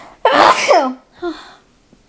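A woman sneezes once, loudly, into her raised arm, with a brief softer sound just after; it comes as she says she thinks she is breathing in glitter from sparkly fabric.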